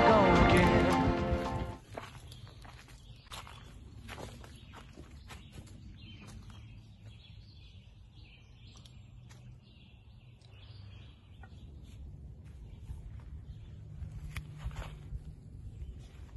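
A song with a male singer ends about two seconds in, giving way to faint outdoor sound: birds chirping, with scattered small clicks and rustles over a low steady hum.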